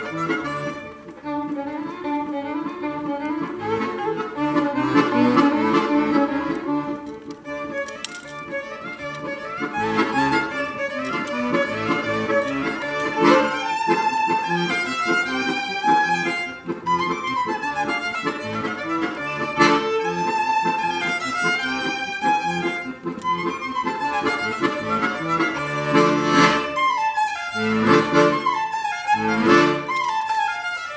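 Violin and accordion playing a duet, the violin carrying the melody over the accordion's sustained chords, with several strong accented chords near the end.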